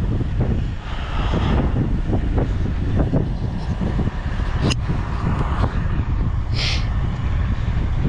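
Wind rumbling on the microphone, with footsteps on dirt and a single sharp click about halfway through.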